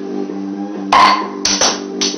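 Crown cap levered off a glass beer bottle with a folding ruler: a sharp pop with a brief hollow tone about a second in, followed by two shorter sharp sounds.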